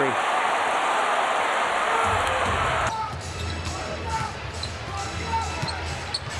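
Loud arena crowd noise that cuts off suddenly about three seconds in, giving way to quieter game sound: a basketball dribbled on a hardwood court with sneakers squeaking.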